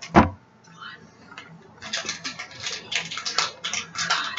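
A single short knock near the start, then a woman's soft whispering from about two seconds in.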